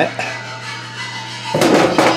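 A short metallic clatter in a stainless steel parts pan, about a second and a half in, over a low steady hum.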